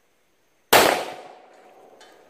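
A single shot from a Taurus PT100 .40 S&W pistol firing a hollow-point round, a sharp crack about two-thirds of a second in that fades over about a second into a faint lingering ring.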